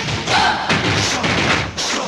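Heavy drum beats in a Telugu film song's percussion-led passage, with little of the melody that comes before it.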